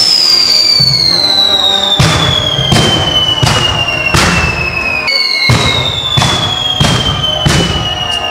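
Fireworks at the foot of a church tower: a regular string of sharp bangs about every 0.7 seconds starting about two seconds in, over a long falling whistle that starts again about five seconds in.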